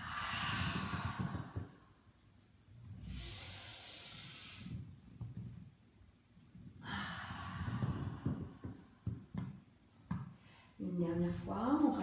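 A woman's deep, full breaths during a Pilates stretch: three long, audible breaths a few seconds apart, followed by her voice beginning to speak near the end.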